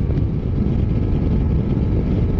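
Adventure motorcycle cruising at highway speed, a steady low rumble of engine and wind rush on the bike-mounted microphone.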